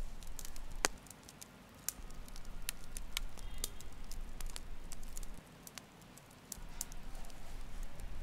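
Small wood campfire crackling, with irregular sharp pops, the loudest just under a second in, over a low steady hiss.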